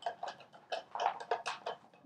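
Light, irregular clicks and taps, about five a second, of hands handling a sewing machine's controls and foot pedal as it is set up just after being switched on.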